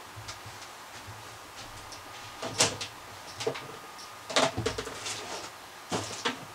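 A few scattered light knocks and clicks, with a dull thump about four and a half seconds in: things being handled and set down.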